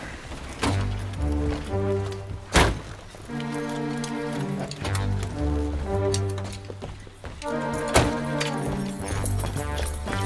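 Background comedy score with a bouncy, repeating bass line and stacked held notes. Two sharp knocks land in it about six seconds apart.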